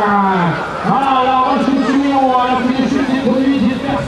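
A man's voice talking without pause: live race commentary.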